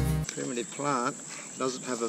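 Background music cuts off just after the start, leaving a man talking over a steady, high-pitched drone of insects.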